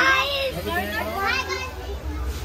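Women's and children's voices talking among a crowd in short, high-pitched phrases, over a low steady hum.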